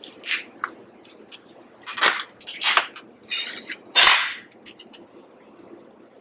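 Short scraping and clattering sounds from a box cutter and a metal speed square being worked on a cutting board, with a sharper knock about four seconds in.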